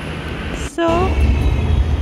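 Light-rail tram passing close by, a low rumble that grows much stronger a little under a second in, under a woman's voice saying "so".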